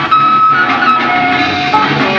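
Live 1970s progressive rock band playing, heard from an analog cassette tape recording with dull, cut-off highs. A long held high note early on gives way to a lower held note later, over a steady bass line.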